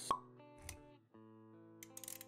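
Animated-intro sound effects over sustained music notes: a short, sharp pop just after the start, a soft low thud a little over half a second later, and a few quick clicks near the end.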